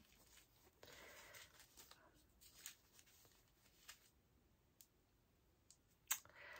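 Near silence with faint rustling and a few small clicks of small packaging being opened by hand.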